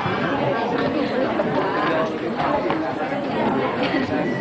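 Many voices chattering at once in a large room, a crowd of people talking among themselves with no single voice standing out.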